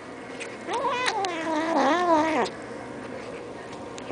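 Kitten squealing while eating treats: one long wavering, warbling call of about two seconds, starting under a second in and stopping suddenly.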